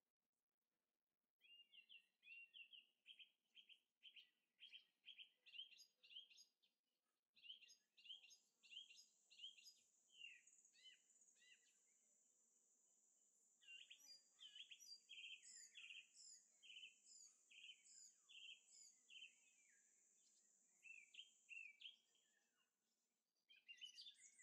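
Faint birdsong: a long run of short repeated chirps, joined by a higher, thinner series of notes for much of the middle.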